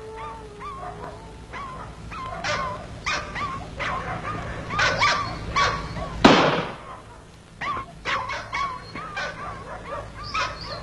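A dog yelping and whimpering in many short, repeated calls that bend in pitch. A single loud bang cuts in a little past the middle.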